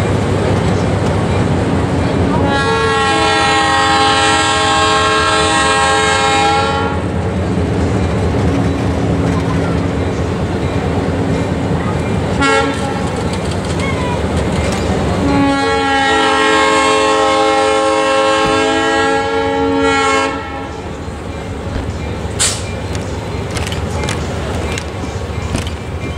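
A diesel locomotive's multi-note air horn sounds two long blasts, each four to five seconds long and about nine seconds apart, over the steady rumble of the locomotive's diesel engine. Two long blasts is the standard horn signal that a train is about to move forward.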